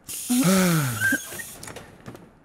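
Cartoon sound effect of a bus's folding door opening with a hiss of air, fading over the first second and a half, with a pitched tone gliding downward partway through.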